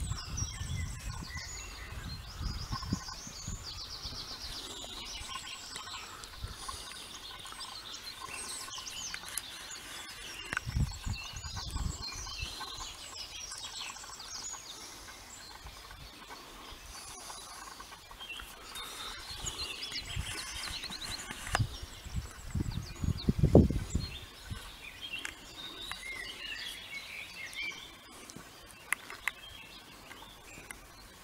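Several songbirds singing and chirping, with quick trills here and there. Low rumbling bumps on the microphone break in about a third of the way through and again, loudest, a little after two-thirds.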